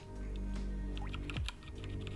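A few scattered computer keyboard key presses, faint, over quiet background music with sustained tones.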